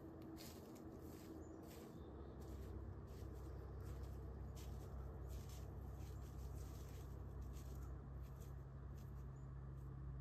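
Faint, irregular crackling and rustling of dry leaves and brush under a whitetail deer's hooves as it walks, over a steady low rumble.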